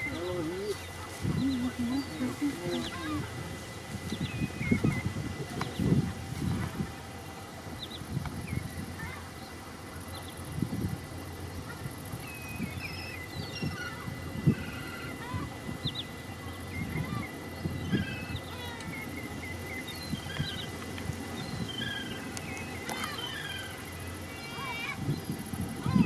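Wading birds calling at a wet meadow pool: scattered short chirps and whistles throughout, over irregular lower-pitched calls or voices and a faint steady high tone.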